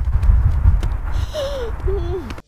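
Coats rubbing and bumping against the microphone during a hug, heard as a loud, muffled low rumble with soft knocks. A short murmuring voice rises and falls in the second half.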